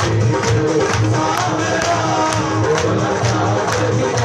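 Live Hindu devotional bhajan music from the stage band, an instrumental passage: a melody line over a pulsing bass beat with a sharp percussion strike about twice a second.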